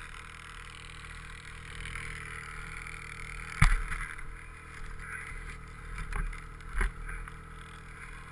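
Ski-Doo two-stroke snowmobile engine running steadily at low revs, with a sharp knock a little over three seconds in and two smaller thumps later on.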